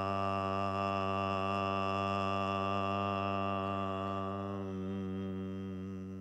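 A man's voice chanting one long, steady, low note on the syllable "La", the sound for the base (root) chakra in a chakra meditation. The tone softens a little near the end.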